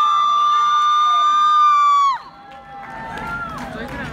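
A long, loud, high-pitched yell of cheering from the audience, held on one steady note and dropping away about two seconds in. After it comes quieter crowd noise with a shorter call.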